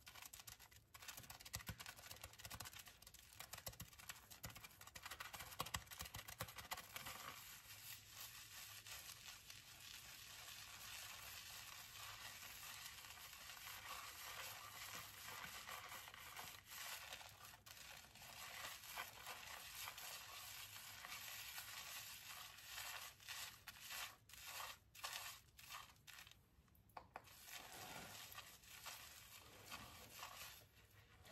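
Fingers scrubbing a shampoo-lathered scalp: a faint, continuous crackle and scratch of foam and wet hair being rubbed, breaking off briefly a few times near the end.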